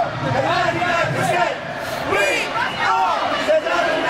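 Voices of a crowd of marching picketers, several people calling out and shouting at once.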